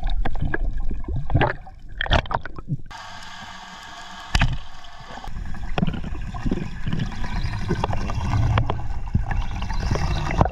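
Underwater sound picked up through a camera housing: water rushing and bubbles gurgling, with scattered sharp clicks and knocks, the sound changing abruptly about three seconds in.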